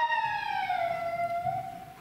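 A siren wailing: one long tone that slowly falls in pitch and fades out near the end.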